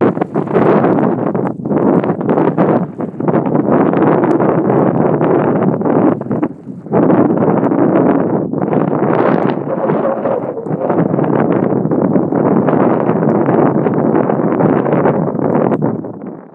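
Loud wind rushing and buffeting over a phone's microphone while skiing through a snowstorm, with a few brief lulls, the longest about six and a half seconds in.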